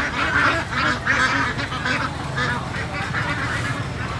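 Caged ducks quacking in a string of short calls, roughly two a second, loudest in the first couple of seconds and thinning out after.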